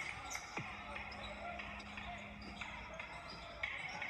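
Basketball being dribbled on a gym floor, a few sharp bounces over the murmur of spectators' voices in the hall.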